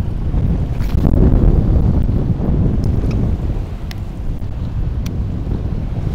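Strong wind buffeting the microphone over choppy sea, gusting harder about a second in, with a few faint clicks.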